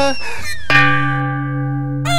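Cartoon sound effects over background music: a whistling tone that rises and slides down, and a ringing metallic clang that starts suddenly under a second in and rings on.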